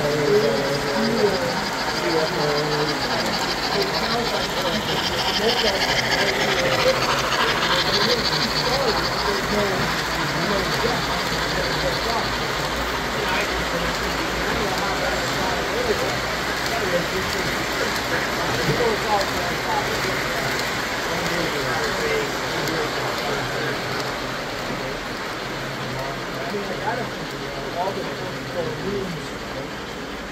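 Three-rail O-gauge model trains rolling around the layout track, with a constant murmur of people talking in the room; the train noise swells about 4 to 9 seconds in, then fades gradually toward the end.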